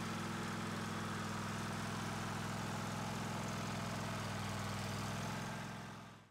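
Wood gasifier power unit running, a steady low engine-like hum that fades out near the end.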